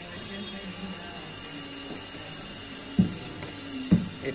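Two dull thumps about a second apart near the end as a wooden hand-printing block is struck down onto a saree on the padded printing table, over faint steady background noise.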